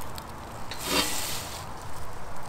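Scraping and rustling as a hand truck is slid out from under a large terracotta pot, with a brief knock about a second in.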